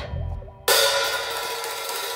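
Live band music: after a drum hit dies away, a cymbal is struck about two-thirds of a second in and left ringing, over a low bass note.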